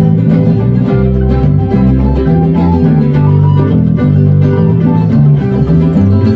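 F-style mandolin and acoustic guitar playing a niggun tune together, a steady flow of picked and strummed notes.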